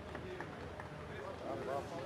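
Faint voices, brief rising and falling calls, over a steady low background rumble.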